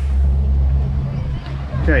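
Twin Mercury Verado 350 hp outboard engines idling with a steady low hum.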